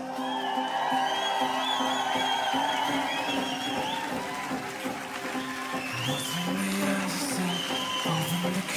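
Live electronic band music: held synthesizer chords under a high, wavering synth melody. The deep bass drops out at the start, and a pulsing bass line comes back about six seconds in.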